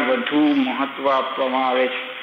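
Only speech: a man lecturing in Gujarati.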